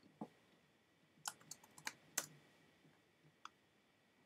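Faint computer keyboard keystrokes: a single click, then a quick run of about six key presses a little over a second in, and one more near the end, as text is typed into a field.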